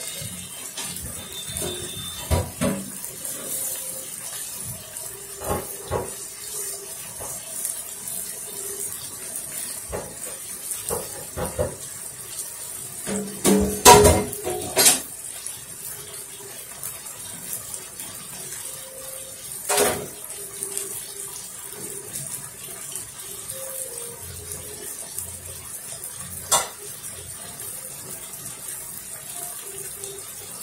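Beef strips with onion and green pepper sizzling in a frying pan: a steady hiss of fat and juices, with sharper pops and crackles now and then, the loudest cluster about halfway through.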